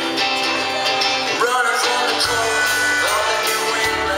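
Live band playing a country-rock song: a male lead voice singing over electric guitar, bass and drums.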